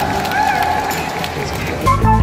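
A voice calling out in long, drawn-out bending tones over the noise of a large crowd, then rock music cutting in suddenly near the end.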